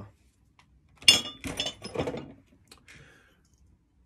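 Metal hand tools handled and set down: a sharp metallic clink about a second in with a brief ring, then about a second of clattering and a few lighter clicks.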